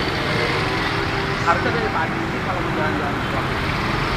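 Steady street-traffic rumble heard from a motorcycle moving slowly in congested traffic among minibuses, cars and motorbikes, with faint voices underneath.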